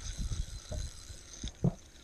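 Spinning reel being cranked as a hooked bass is brought in, with a faint steady high whine, irregular low rumbling on the microphone, and one sharp thump near the end.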